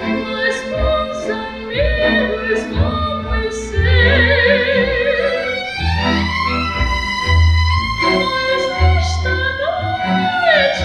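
Symphony orchestra's string section playing a sustained passage: a melody with wide vibrato over long, low cello and double bass notes.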